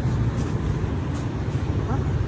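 Steady low rumble of street traffic, with a brief voice near the end.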